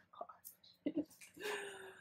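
A woman's breathy, half-whispered exclamation of surprise, "oh my God".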